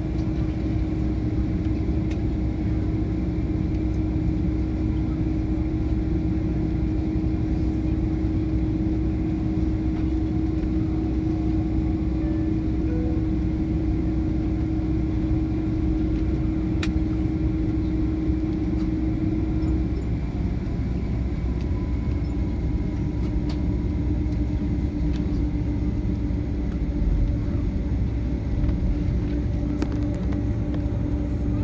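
Cabin noise inside a Boeing 767-300ER taxiing: a steady engine drone with a low rumble beneath. The droning tone steps down slightly in pitch about twenty seconds in.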